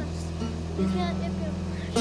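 Acoustic guitar being strummed while a child sings along, over a steady low hum.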